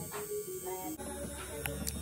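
A low, steady electrical hum, with faint room sounds over it.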